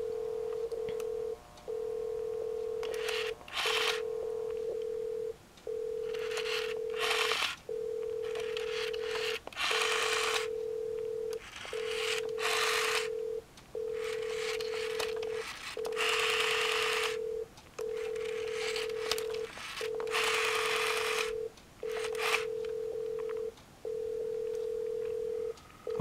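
Telephone priority ringback tone repeating in a steady cadence of about 1.65 s on and 0.35 s off, heard through a phone on speaker. Over it, a rotary dial is wound and let go several times, each return heard as a short burst of whirring.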